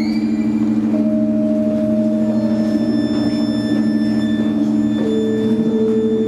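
Live instrumental music: a steady, ringing low drone with a long bowed violin note held above it, the violin stepping down to a lower note about five seconds in.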